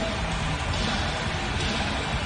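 Background music mixed with a steady haze of arena noise.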